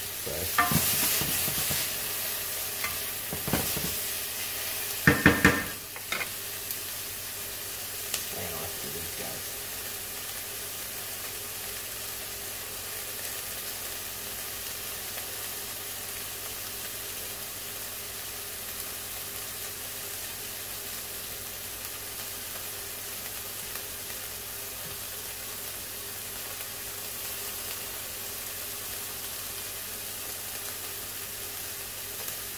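Diced celery and green pepper sizzling in a stainless steel sauté pan, stirred and scraped with a wooden spoon for the first few seconds to loosen the browned bits left from searing meatballs, with a few sharp knocks about five seconds in. After that the vegetables sizzle steadily on their own.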